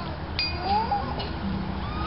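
A faint voice making a few rising and falling wailing glides over a low steady hum.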